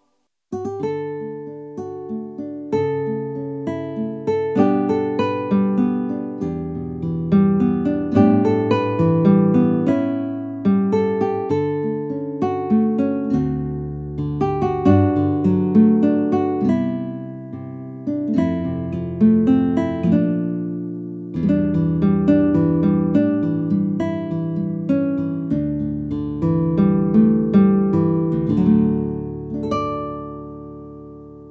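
Yamaha CLP745 digital piano being played in one of its built-in voices: a flowing piece of chords under a melody, each note struck and then decaying. It starts about half a second in and fades away near the end.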